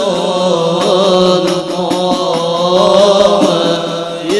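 Voices chanting Islamic devotional chant in long, held, gliding melodic lines, over a steady low hum.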